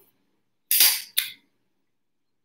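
Sounds of eating watermelon with a fork from a bowl: two short, sharp noises about a second in, the first fading quickly and the second a brief click.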